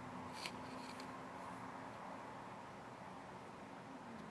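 Faint handling noise from a folding pocketknife turned in the hand: two soft clicks, about half a second and a second in, over a low steady room hum.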